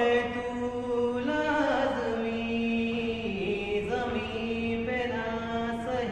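A man singing solo, holding long notes that slide and bend from one pitch to the next.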